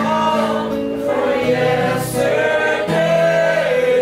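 A man singing to his own acoustic guitar, the voice holding long notes.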